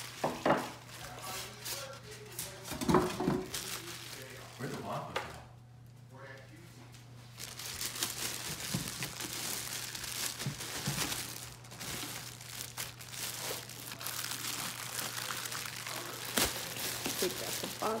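Clear plastic bag crinkling and rustling as it is pulled off the espresso machine, continuous over the second half. A voice talks in the background during the first few seconds.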